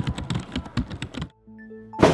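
Rapid, irregular keyboard-typing clicks that stop suddenly about a second and a quarter in. A few soft, held music notes sound near the end.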